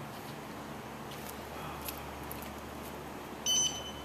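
A handheld RFID reader gives one short, high beep near the end, confirming a tag read: the tag has survived the sledgehammer blow. Before the beep, only quiet room tone with a low hum.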